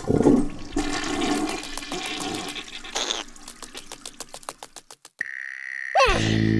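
A rushing, gurgling sound like water draining or a toilet flushing, fading out over about five seconds, followed near the end by a steady high tone.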